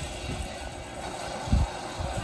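Anime fight-scene sound effects: a low rumble with a heavy thump about one and a half seconds in.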